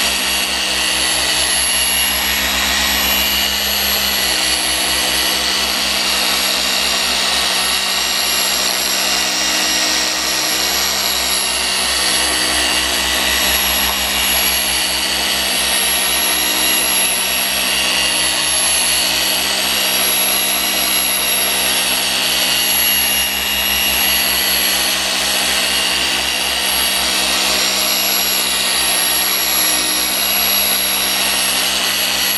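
Rupes LHR21 random-orbital polisher running steadily, its foam pad buffing compound into car paint: a steady motor whine with a high hiss over it.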